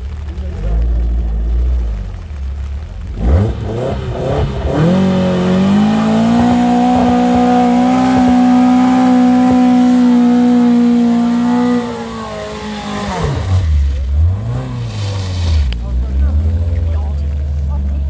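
Open two-seater trials car's engine revving up and held at high, steady revs for about seven seconds as it climbs a muddy section, then dropping away; a lower engine rumble follows near the end.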